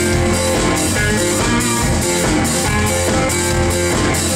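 A live rock band playing: guitars and a drum kit with a steady beat.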